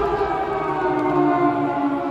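A siren sound in the arena's intro soundtrack, a stack of held tones winding slowly down in pitch.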